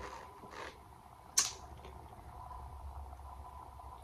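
Quiet room tone with a low steady hum, a soft rustle of a printed paper sheet being handled, and one sharp click about a second and a half in.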